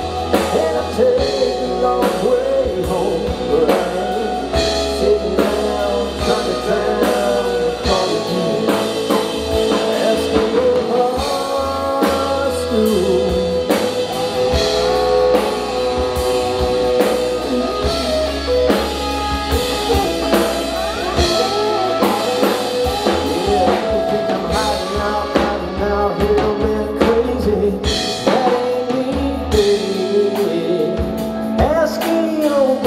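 Live country-rock band playing an instrumental break: lead electric guitar bending notes over strummed acoustic guitar, bass guitar and drum kit.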